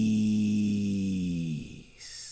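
A steady low pitched tone with a bright hiss above it, which sags in pitch and fades out about one and a half seconds in.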